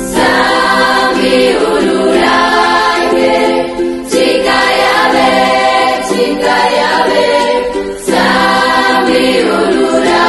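A youth choir singing a hymn in harmony, in sung phrases about four seconds long, each new phrase entering right after a brief dip.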